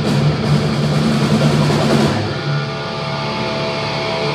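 Thrash metal band playing live: drum kit with cymbals and electric guitar. About halfway through, the drums drop out and held guitar notes ring on.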